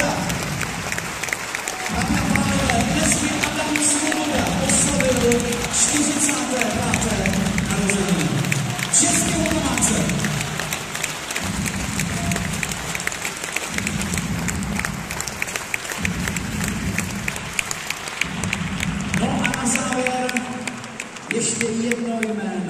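Music and a voice playing over an arena's loudspeakers, ringing in the large hall, with a crowd applauding underneath.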